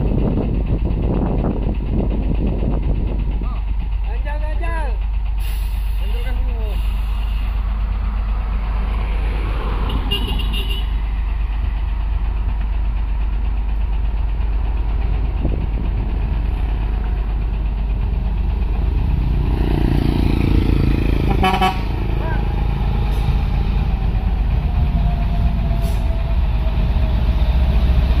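Hino tractor-trailer's diesel engine running under load with a steady low drone as the truck crawls slowly uphill hauling a loaded ISO tank trailer. A short toot sounds about three-quarters of the way through.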